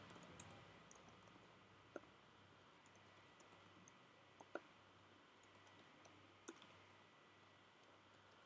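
Near silence with a few faint, sharp computer clicks spaced a couple of seconds apart, from the keyboard and mouse as an online form is filled in.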